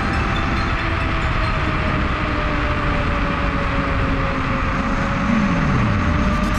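Steady rushing wind and road noise from riding a FIIDO Q1 electric scooter at about 50 km/h, with a low tone falling in pitch near the end.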